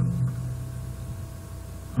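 Steady background hiss with a faint hum: the noise floor of the narration's microphone between words, with no distinct sound event.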